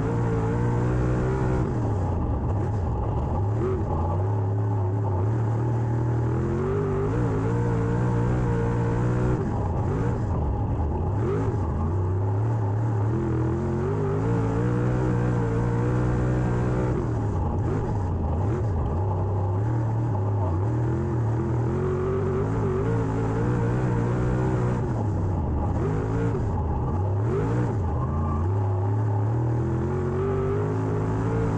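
Dirt late model race car's V8 engine heard from inside the cockpit, climbing in pitch under throttle down each straight and dropping off as the driver lifts for the turns, about every eight seconds.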